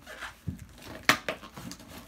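Fingers and nails picking and scratching at the packing tape on a cardboard box while trying to open it: a string of short scrapes and taps, the loudest about a second in.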